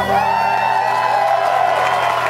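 Audience cheering and whooping as the song ends, over the last ringing electric guitar notes; scattered clapping begins near the end.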